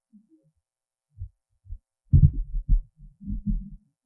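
Microphone handling noise: a run of dull low thumps and rubbing as a microphone on a stand is gripped and adjusted. It starts about a second in and is heaviest around the middle.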